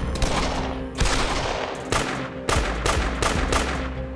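Handgun gunfire exchanged in a shootout: a string of sharp shots, about eight, spaced unevenly and coming faster in the second half.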